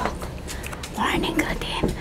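A person speaking softly, almost in a whisper, starting about a second in, with a few light handling clicks.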